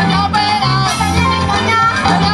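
A Cuban band playing loud live Latin dance music, with a repeating bass line under drums and melody lines.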